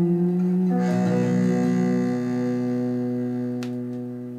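Closing chord of a jazz song with guitar, playing from a vinyl LP. A last chord is struck about a second in and rings out, fading away, with one click near the end.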